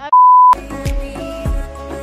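A short, loud, single steady tone of about 1 kHz, an edited-in censor bleep lasting under half a second. Right after it, background music with a steady beat comes in.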